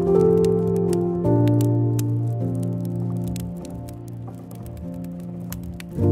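Slow, soft instrumental relaxation music: held chords that change every second or so and dip in loudness midway. Over it are scattered sharp pops and crackles of burning wood logs.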